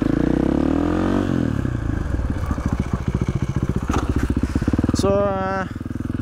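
KTM 500 EXC single-cylinder four-stroke engine with an FMF exhaust run without its dB killer, rising in pitch as the bike accelerates for about a second, dropping at a gear change, then pulling on steadily.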